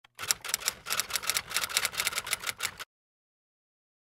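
Typing sound effect: rapid typewriter-style key clicks, about seven a second for nearly three seconds, that cut off suddenly into dead silence.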